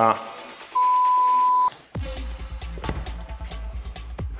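An electronic interval-timer beep: one steady high tone about a second long, following two short beeps just before it, the usual countdown signalling the end of a work interval. Background music with a deep bass beat starts about halfway through.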